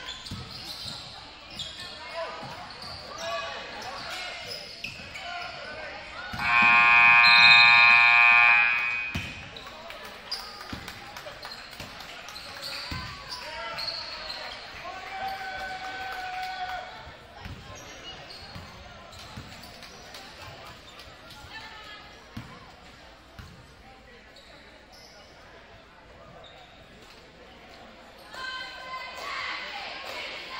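Gym scoreboard buzzer sounding once for about three seconds as the game clock reaches zero, marking the end of the period.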